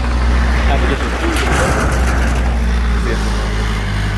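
Engine of a truck-mounted forklift running steadily as it drives across a dirt yard, a deep, even drone.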